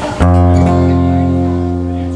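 Amplified acoustic guitar: one chord strummed about a quarter second in and left ringing, slowly fading. It is a check that this guitar comes through the sound system.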